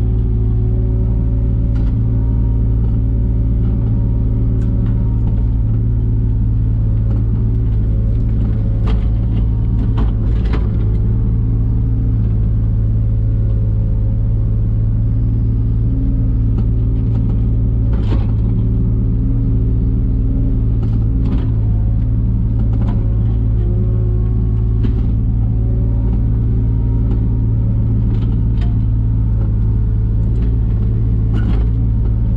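Diesel engine of a 3-tonne JCB mini excavator running steadily under digging load, heard from inside the cab as a deep, constant hum. Now and then a sharp knock sounds as the bucket works through stony soil.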